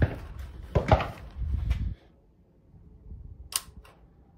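Sharp clicks and knocks with a low rumble in the first two seconds, then one sharp, thin crack about three and a half seconds in.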